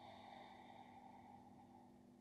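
Near silence broken by one faint, slow exhaled breath, hissing out and fading away over nearly two seconds, over a faint steady low hum.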